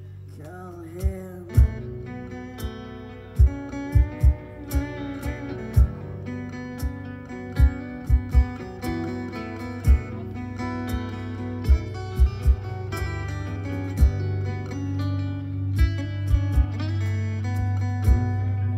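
Live band playing a song: electric and acoustic guitars with scattered drum hits, and a woman singing lead.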